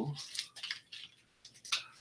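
Faint rustling and a few soft snaps of leaves being handled and stripped from a cut viburnum berry stem, the strongest near the end.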